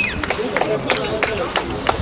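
A referee's whistle blast cutting off right at the start, then faint shouting from players on the pitch with scattered sharp clicks.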